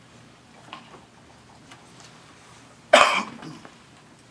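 A person coughs once, sharply and loudly, about three seconds in, over the faint background of a quiet room.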